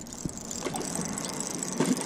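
Steady traffic noise from the road bridge overhead, with a few faint splashes from a hooked crappie thrashing at the water's surface.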